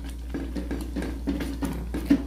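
White chocolate pieces dropping into thick cream in a steel saucepan and a silicone spatula stirring it, making soft scrapes and light knocks, over a steady low hum.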